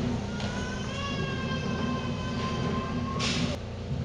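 PA system feedback: a thin, steady whine of several high tones, one sliding up slightly at first, ringing for about three seconds and then cutting off with a short burst of hiss.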